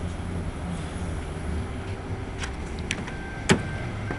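Car door being opened: a couple of clicks from the handle and latch, then a sharp clunk about three and a half seconds in. A steady high electronic door-open chime sounds as the door opens, over a low background rumble.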